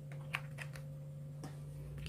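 A few light clicks and taps of a spoon against a mixing bowl, over a steady low hum.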